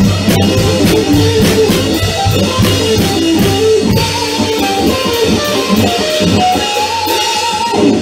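Live rock band of electric guitar and drum kit playing loudly, the guitar running a melodic line over a steady drum beat and ending on a wavering held note near the end.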